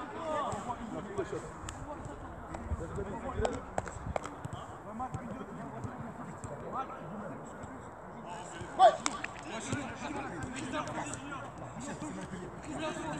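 Outdoor ambience on a football pitch with faint voices, a few light knocks of a football being touched, and one short loud call about nine seconds in.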